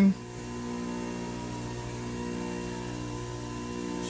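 Electric centrifugal juicer (Jack LaLanne juicer) with its motor running at a steady hum and no change in pitch or load.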